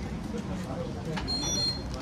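Busy shop and street background with faint voices, and a short high electronic beep about a second and a half in.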